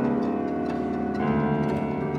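Chamber ensemble playing dense, layered sustained chords in a contemporary concert piece; the whole chord changes to a new harmony about a second in.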